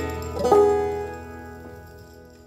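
Banjo: a plucked chord about half a second in that rings out and fades away.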